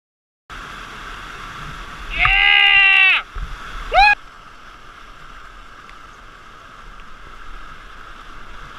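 Rushing whitewater of a river waterfall, with a person's loud yell lasting about a second around two seconds in and a short rising whoop about four seconds in. The water sound comes in abruptly half a second in and carries on steadily after the shouts.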